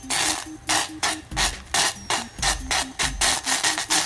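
Metal saucepan scraping on a gas stove's iron grate as it is swirled around, a run of rasping strokes about three a second.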